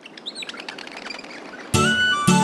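Faint birds chirping, a series of short high calls. About one and three-quarter seconds in, music starts much louder over them.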